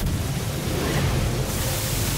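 Cartoon water-cannon sound effect: a loud, steady rushing spray of water with a low rumble beneath it.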